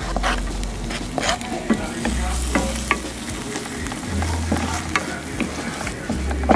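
Diced onion sizzling in hot oil in a nonstick frying pan, stirred and scraped around with a wooden spatula, with scattered light clicks of the spatula against the pan over the steady sizzle.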